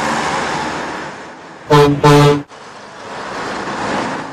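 Train horn sounding two short blasts close together a little under halfway through, between stretches of a rushing train noise that swells and fades.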